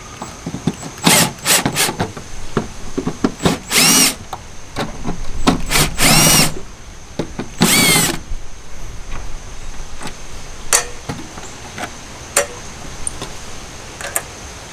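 Cordless drill with a socket bit backing out tail light mounting bolts, run in several short bursts that spin up and wind down. Clicks and knocks of the socket and bolts come in between and after.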